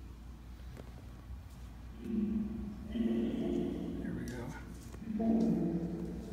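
Geobox spirit box putting out short, garbled voice-like fragments, first about two seconds in and again near the end, over a steady low electrical hum. A fragment near the end is read as the words "Is that him".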